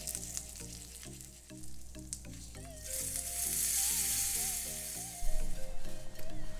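Mustard seeds, urad dal and curry leaves sizzling in hot oil in a small tempering pan, the hiss swelling around the middle. Background music with a steady rhythmic beat runs underneath.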